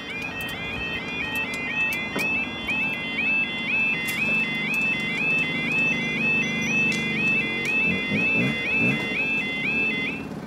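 UK level crossing yodel alarm sounding as the barriers lower: a loud, rapidly repeating rising two-tone warble that cuts off suddenly at the end once the barriers are fully down. A low rumble runs beneath it in the second half.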